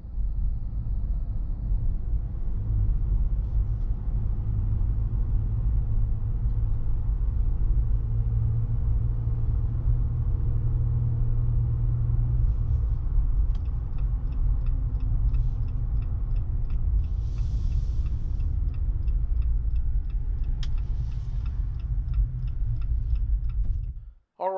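Inside the cabin of a 2018 Jeep Wrangler JL Unlimited Rubicon on the move: a steady low rumble of engine and road noise from its 3.6-litre Pentastar V6. In the second half a quick, regular light ticking runs for several seconds.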